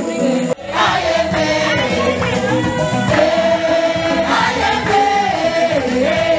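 A group singing a gospel song together, with a brief break in the sound about half a second in.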